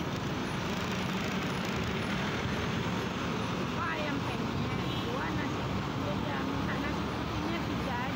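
Steady road traffic noise heard from a moving scooter in city traffic, with faint indistinct voices talking.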